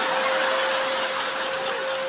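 Upright vacuum cleaner running at full speed, a steady motor whine held at one pitch over the rushing noise of its suction.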